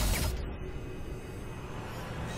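Intro sound design for an animated logo: a whoosh right at the start, then a low rumbling musical bed.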